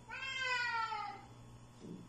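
Domestic tabby cat giving one meow about a second long, rising briefly then falling in pitch, pleading to be let outside.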